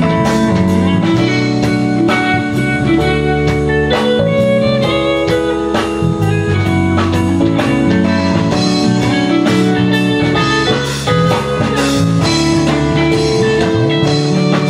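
Live band playing an instrumental passage: electric guitar leading over keyboard, with a steady beat.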